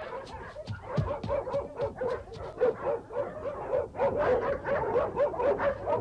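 Dogs barking rapidly, the barks coming in quick succession and growing more even through the second half.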